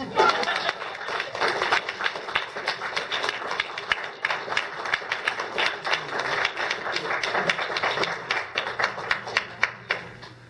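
Audience applauding: dense, steady clapping of many hands that starts at once and stops near the end.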